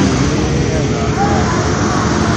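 Motorbike engine running at low revs in a flooded street, under a steady rushing noise.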